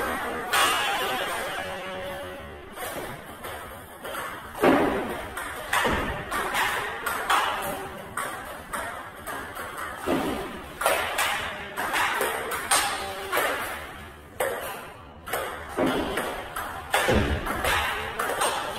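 A table tennis ball being struck by the bat and bouncing on the table, as irregular sharp knocks every second or two, with music underneath.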